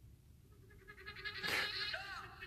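A song starting to play back faintly through a small, tinny speaker. Thin, high-pitched tones fade in from about half a second in and grow louder around a second and a half in.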